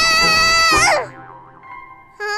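A cartoon chick's long, high scream as she falls down a tunnel, held steady and then dropping away about a second in, with soft background music continuing after it.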